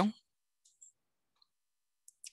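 A man's word trails off, then near silence with a few faint short ticks, a computer mouse clicking a link.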